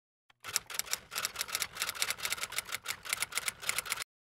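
Typing sound effect: a fast, even run of key clicks, about ten a second. It starts about half a second in and cuts off suddenly at the end, matching the title text being typed out letter by letter.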